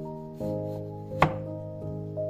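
A chef's knife slicing through a peeled potato and knocking once, sharply, on the wooden cutting board about a second in. Soft background music plays throughout.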